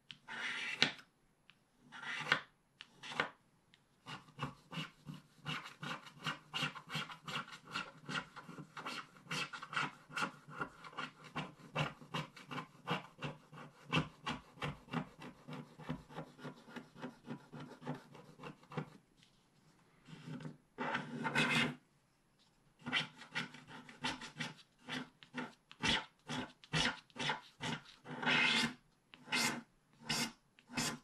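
A wooden stylus scraping the black coating off a scratch-art card in many quick, short strokes. There is a short pause about two-thirds through, then one longer stroke and more quick strokes.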